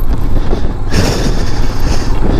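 Motorcycle riding over a rocky gravel track: engine, tyres on loose stones and wind buffeting the microphone blend into a loud, rough rumble. A hiss grows stronger from about a second in.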